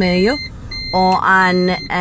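A person speaking, with a steady high-pitched whine behind the voice that drops out briefly about half a second in.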